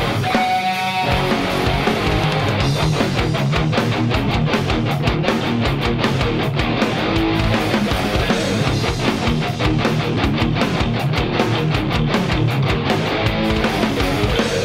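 Yamaha Revstar RS720BX electric guitar played loud through a cranked, overdriven sound in a heavy rock song. A chord rings out at first, then a couple of seconds in a fast, driving picked rhythm takes over.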